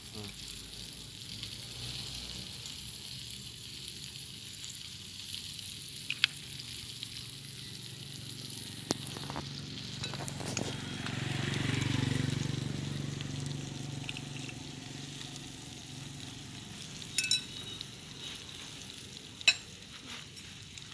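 Cockles in scallion oil sizzling on a wire grill over charcoal, a steady hiss. A low rumble swells and fades midway, and a few sharp clicks come through, two of them close together near the end.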